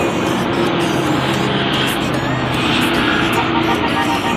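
Steady city road traffic noise, with background music playing over it.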